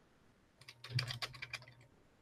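Typing on a computer keyboard: a quick run of key clicks starting about half a second in and lasting about a second, with a faint low hum under the keystrokes.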